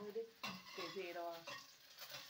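A woman's voice speaking a few short, soft words, trailing off into a pause near the end.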